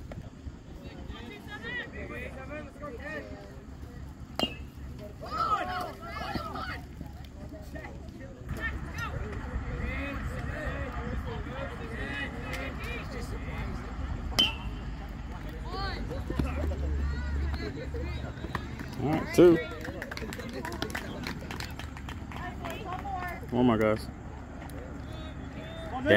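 Scattered shouts and chatter from baseball players and spectators across the field, with the loudest shout about 19 seconds in. Two sharp single knocks come about 4 and 14 seconds in.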